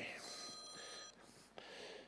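A mobile phone's electronic alert tone, a faint high chime made of several steady tones, cut off about a second in as it is switched off.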